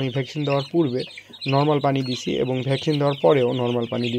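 A man's voice talking, with a brooder full of broiler chicks peeping behind it.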